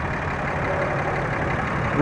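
Steady engine noise of a vehicle idling, an even rumble that does not change.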